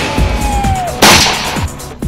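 Dubbed pistol gunshot sound effects: a thin falling whine through the first second, then a loud sharp shot about a second in, over background music.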